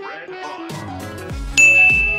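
Background music with a steady beat; about one and a half seconds in, a single loud, high bell-like ding starts sharply and rings on.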